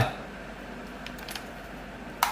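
A few faint, light clicks of a pistol and its conversion kit being handled, a little past a second in.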